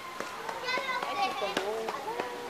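Children's high voices chattering and calling among zoo visitors, with a few sharp clicks.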